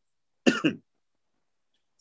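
A man briefly clears his throat once, about half a second in, in a short two-part rasp that falls in pitch.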